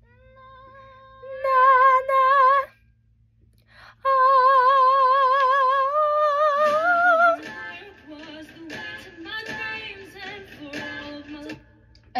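A young woman singing an unaccompanied "ah" vocal line for a harmony, with two long high notes held with vibrato. The second note is longer and slides up near its end. After it come softer, lower sung phrases.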